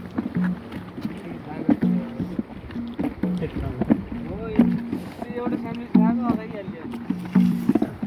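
Madal, the Nepali two-headed hand drum, played in a steady rhythm of short pitched strokes, about two a second, with low and high strokes alternating.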